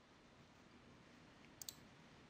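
Two quick computer mouse clicks about a second and a half in, over near-silent room tone: the button press that opens the PIN-code popup.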